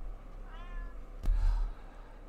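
A domestic cat meows once, briefly, about half a second in; then a sharp knock and a low thump follow, the loudest sound here, as the cats play.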